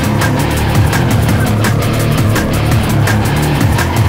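Loud instrumental guitar rock: a dense band mix with a heavy low end and busy, steady drum hits.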